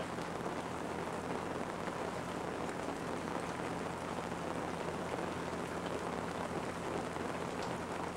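Steady, even hiss with a low hum under it and no separate events in the room's background noise.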